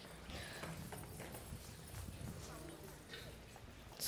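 Quiet hall room tone with a low hum and a few soft, irregular knocks: footsteps on a wooden stage floor.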